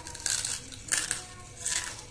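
Close-up mouth crunching of hard white banslochan chunks being chewed, three crisp crunches about half a second apart.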